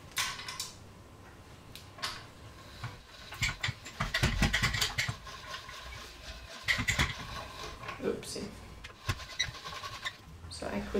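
A hand-cranked chrome pasta machine being turned as a sheet of pasta dough is rolled through it. Its crank and rollers rattle and click in spells, loudest about three and a half to five seconds in.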